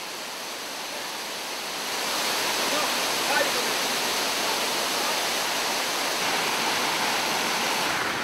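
Waterfall pouring over rocks: a steady rush of falling water that grows a little louder about two seconds in.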